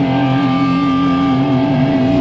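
Live heavy metal band, with an electric guitar holding one long, steady sustained note over the band.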